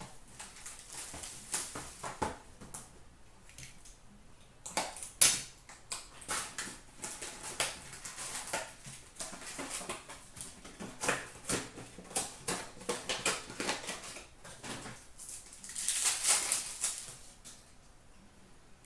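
Hockey card packs being handled and opened by hand: foil wrappers crinkle and rustle, and cardboard and cards give sharp clicks and taps. The sharpest click comes about five seconds in, and a denser stretch of crinkling and tearing comes near the end.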